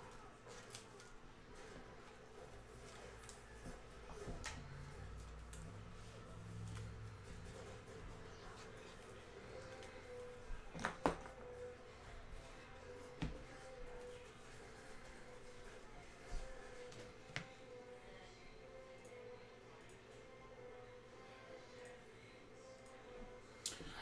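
Faint room tone with a few soft clicks and taps of trading cards being handled on a tabletop, the sharpest about eleven seconds in.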